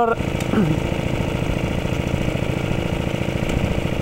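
A small engine idling steadily, with an even, rapid pulse and a constant level.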